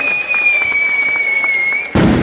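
Mascletà pyrotechnics: a long firework whistle sliding slowly down in pitch over scattered crackling firecrackers, then one loud bang near the end that echoes and dies away.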